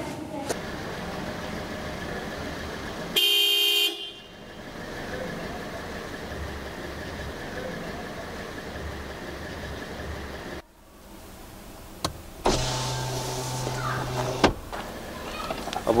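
Car horn honking: a short, loud blast about three seconds in, then a longer, lower-pitched honk of about two seconds near the end.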